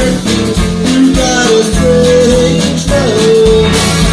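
Live rockabilly band playing, with upright bass, saxophone and electric guitar over a steady beat. Long held notes slide up and down in pitch.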